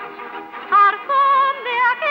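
A woman singing with a wide vibrato, in held notes that begin again several times. The sound is thin and cut off at the top, as on an old 1940s film soundtrack.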